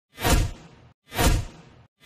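Two identical whoosh sound effects about a second apart. Each one swells in quickly with a deep low end and fades out, then stops dead, one whoosh per number of an animated countdown intro.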